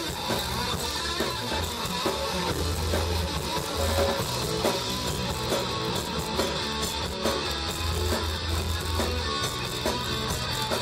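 Live rock band playing an instrumental passage, with an electric guitar over a steady bass line and drums.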